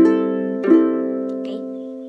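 Ukulele in standard G C E A tuning strummed twice across its open strings, the chord ringing and fading after each stroke. The strings have just been tuned with a clip-on tuner and are in tune.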